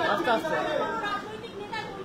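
Indistinct talk and chatter from several voices, with no clear words, fading somewhat in the second half.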